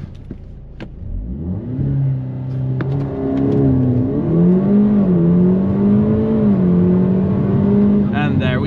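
Audi S3 8P's turbocharged 2.0 TFSI four-cylinder, stage 2 tuned with a 200-cell downpipe and resonator delete, accelerating hard from a standstill in a launch-control start, heard from inside the cabin. The engine note builds from about a second in and climbs in pitch, dipping briefly twice as the dual-clutch gearbox makes quick upshifts into third.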